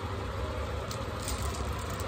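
Steady low background rumble, with a few faint soft clicks about a second in.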